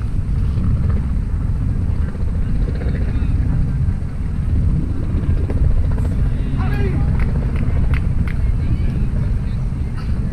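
Wind buffeting an outdoor camera microphone, a steady low rumble, with distant voices calling out about seven seconds in.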